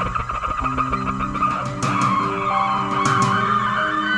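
Live instrumental rock band with electric bass, electric guitar, keyboards and drums. A noisy, gritty lead tone sits over held low notes, and two sharp hits come about two and three seconds in.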